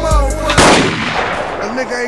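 A hip-hop beat is cut off about half a second in by a single loud gunshot sound effect, which dies away over about a second and a half.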